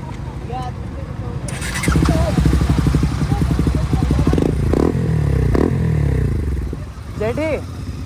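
Motorcycle engine revving close by. It comes in loud about two seconds in, the revs rising and falling for several seconds, then drops back shortly before the end.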